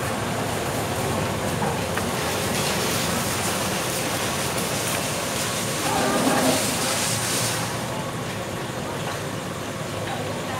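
Steady rumble and hiss of passing road traffic, with faint voices mixed in; it swells briefly about six seconds in.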